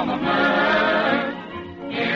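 A choir singing the opening theme song of an old-time radio comedy show, with musical accompaniment.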